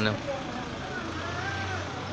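Shop background noise: a steady low hum with faint voices talking in the background.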